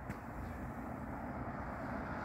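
A passing car's tyre and engine noise on the road, growing gradually louder as the car approaches. There is a single short click right at the start.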